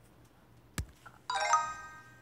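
A single sharp tap, then about half a second later a short, bright electronic chime of a few quick ringing notes from the exercise app, the correct-answer sound that signals the answer has been marked right.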